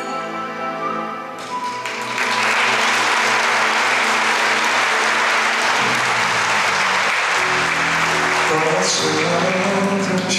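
The held final notes of a song's accompaniment end, then an audience applauds loudly for about seven seconds. Music starts again under the applause near the end.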